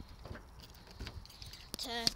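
A bunch of car keys jangling faintly in the hand, a few light clicks, over a low rumble of handheld-camera movement; a girl's voice comes in near the end.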